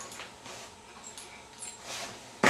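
A bull terrier making a few faint, short sounds.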